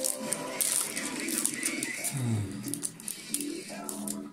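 Foil booster pack wrapper crinkling and tearing open, mostly in the first second, over background music.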